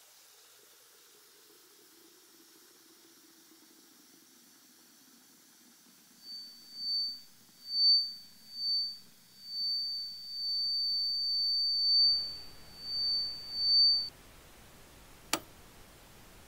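Faint running tap water, then a loud high-pitched electronic tone that pulses on and off irregularly for about eight seconds. A rougher static hiss comes in about twelve seconds in, and there is a sharp click near the end.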